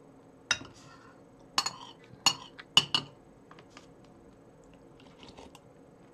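Metal spoon clinking against a ceramic plate while porridge is scooped from it: about six sharp clinks in the first three seconds, then only faint small ticks.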